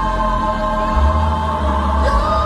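Gospel choir singing a long held chord over a deep bass, which grows stronger about a second in.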